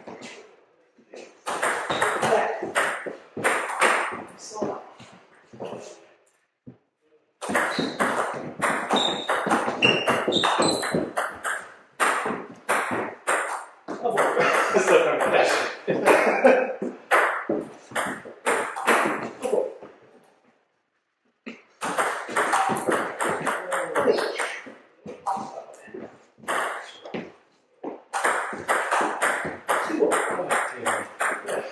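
Table tennis rallies: the ball clicks off the bats and bounces on the table in quick series, with short pauses between points.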